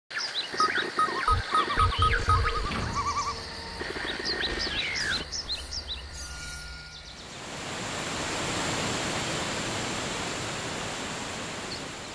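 Produced intro sting: music with many short bird- and insect-like chirps and a few low thumps for about the first seven seconds, then a steady rushing noise that swells and slowly fades.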